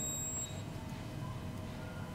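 Quiet room tone: a steady low hum, with a faint high-pitched tone in the first half-second.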